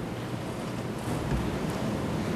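A steady, even hiss of background noise on an open microphone, with no speech.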